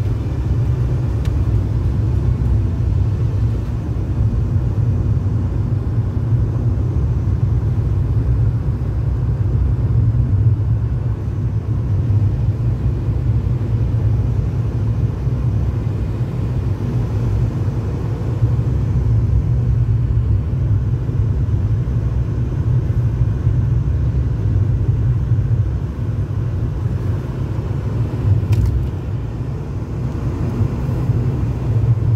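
Steady low rumble of a car driving, heard from inside the cabin: tyre and road noise on a wet, slushy winter road.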